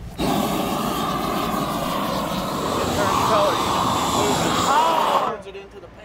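Handheld propane torch burning with a loud, steady rush as it heats thermoplastic pavement markings so they melt and bond to the asphalt; it cuts off suddenly about five seconds in.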